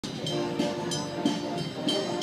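Guards military band playing a march: held brass chords over a regular beat of about three strikes a second.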